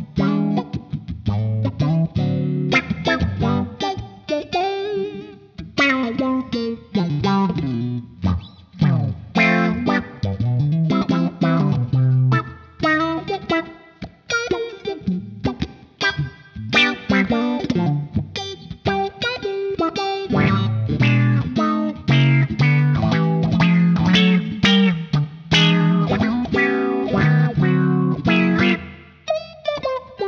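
Electric guitar played through a GFI System Rossie envelope filter pedal: funky picked notes and chords with a filtered, wah-like tone, and the odd note bending or sweeping in pitch near the middle.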